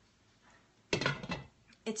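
A metal spoon clinking and scraping against a cooking pot as it scoops out a bite of sausage stuffing: a short clatter about a second in.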